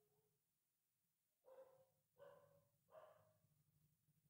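Faint dog barking: three barks about two-thirds of a second apart, over a low steady hum.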